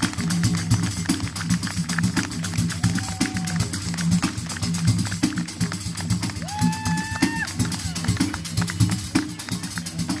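Live southern Italian folk music: a hand-held frame drum with jingles beaten in a fast, steady rhythm over a low drum pulse. A held higher note, sung or played, comes in about six and a half seconds in and lasts about a second.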